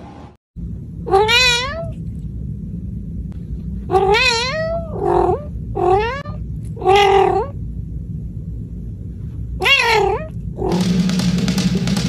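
A cat meowing repeatedly: about six drawn-out, wavering meows over a steady low hum. Music starts near the end.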